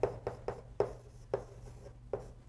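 Chalk writing on a chalkboard: about five short tapping, scraping strokes, over a steady low room hum.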